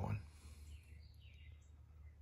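The last of a spoken word right at the start, then quiet room tone with a faint steady low hum.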